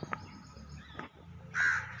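A crow cawing: one harsh call about a second and a half in, with a few light clicks before it.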